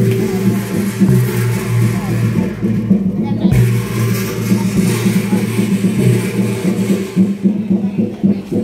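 Large bronze gong beaten with a mallet, its low hum ringing on without a break and renewed by fresh strokes, with people talking.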